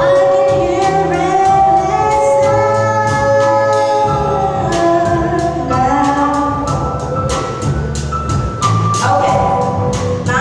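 Live band of piano, bass and drums playing with a woman singing long held notes into a microphone, the drums and cymbals keeping a steady beat.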